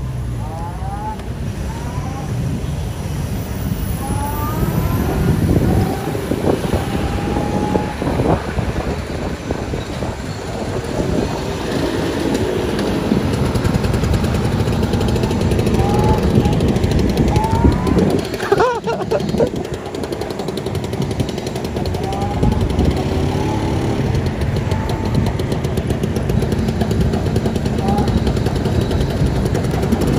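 Wind buffeting the microphone of a moving scooter, with steady road and traffic noise and snatches of voices.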